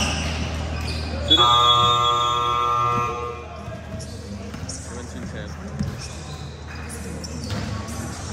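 Gym scoreboard buzzer sounding one steady, loud blast of about two seconds as the game clock runs out, marking the end of the period.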